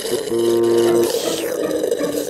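Cartoon sound effect of a drink being sucked noisily through a straw: a wet, gurgling slurp that runs on throughout.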